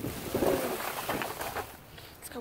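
Plastic bags and packaging rustling and crinkling as hands dig through a dumpster full of bagged cosmetics and boxes, loudest about half a second in. A short low hum-like sound comes at the same moment.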